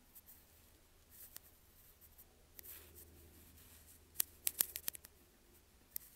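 Faint handling noise in a small room: scattered light rustles and taps, then a quick run of sharp clicks about four seconds in, over a low steady hum.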